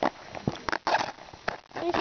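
Zipper of a small clear plastic zippered pouch being worked by hand: a few short clicks and quick rasps of the zip, with a child's voice near the end.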